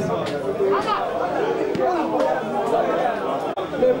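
Several people's voices talking over one another in a steady chatter, with no one voice standing out.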